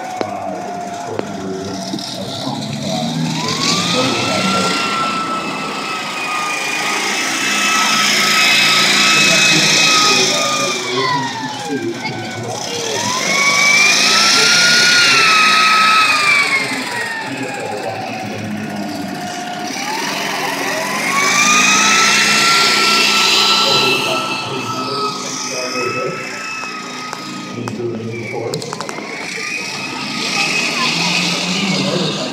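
M274 Mule driving, with a whine that rises in pitch as it speeds up, holds, then falls as it slows. This happens three times, and the loudest stretch comes about halfway through.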